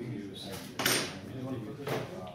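Hard objects clattering, as hand tools are handled and set out: a longer rattle about a second in and a shorter one near the end, over low background voices.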